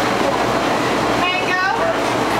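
Busy café din: a steady, loud wash of noise, with a voice speaking briefly in the second half.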